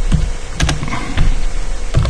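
Typing on a computer keyboard: quick, irregular key clicks with dull low thuds as the keys are struck.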